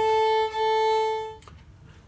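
Violin bowing one steady note on the A string, with a brief dip in loudness about half a second in where the bow changes direction. The note stops with a small click about a second and a half in.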